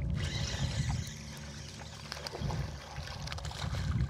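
Hooked bass thrashing and splashing at the water's surface as it is reeled in on a spinning reel and brought to the side of the boat.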